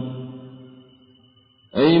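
A man's chanted Quranic recitation in Arabic, its final note fading away over about a second and a half. Near the end a man's voice begins speaking in Pashto.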